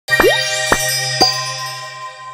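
Short channel-logo jingle: three sharp percussive hits about half a second apart, the first with a quick rising pop, over a low steady hum, leaving ringing chime tones that slowly fade.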